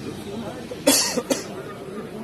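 A person coughing twice in quick succession about a second in, over the low murmur of a crowd.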